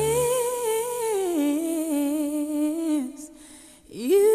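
A single voice holding a long sung note with vibrato over sparse backing music. The note steps down in pitch about a second in and ends about three seconds in.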